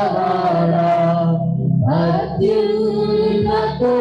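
Women singing a Telugu Christian worship song into microphones over a sustained keyboard accompaniment, in long held notes. The voices break off briefly about halfway through, then come back in while the keyboard carries on underneath.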